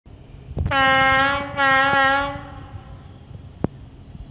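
Horn of the approaching train's lead locomotive, a class 751 diesel, sounded in two blasts of under a second each with a brief gap between them, one steady tone. A sharp click follows near the end.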